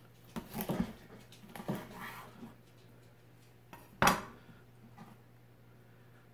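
Long knife cutting through smoked beef ribs on a wooden cutting board: a run of scattered knocks and scrapes as the blade works through the meat and meets the board, then one sharp, louder knock about four seconds in. A steady low hum sits underneath.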